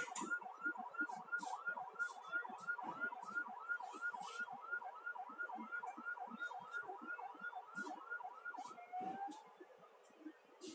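Emergency-vehicle siren sounding a fast yelp, its pitch sweeping up and down about three times a second, winding down in one last low glide and stopping near the end. Scattered sharp high clicks sound over it.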